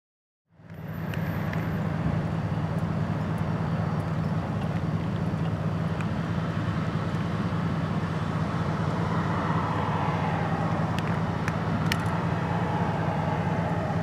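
A vehicle engine idling nearby with road noise: a steady low hum that fades in about half a second in and holds evenly.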